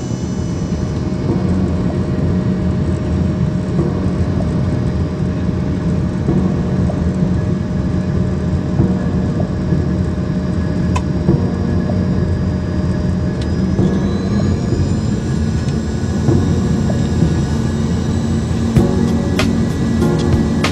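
Jet airliner cabin noise on descent: a steady engine hum with thin whining tones, several of which rise slightly in pitch about two-thirds of the way through.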